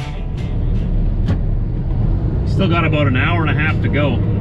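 Steady low drone of a semi-truck's diesel engine and road noise heard inside the cab while driving. A man starts talking about halfway through.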